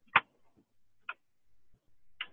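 Two short, sharp clicks, a louder one just after the start and a fainter one about a second later, with near quiet between.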